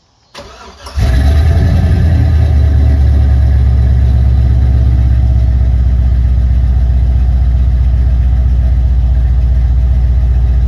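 The LS-swapped Cutlass's stock 4.8 L LS V8, breathing through headers and a true dual exhaust, cranks briefly on the starter and catches about a second in. It then idles steadily and loud.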